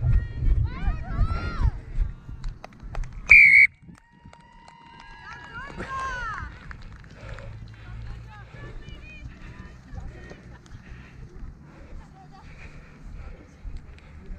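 Raised voices shouting, then one short, shrill blast of a referee's whistle about three and a half seconds in, the loudest sound here, blown as the try is scored. After it, scattered distant voices.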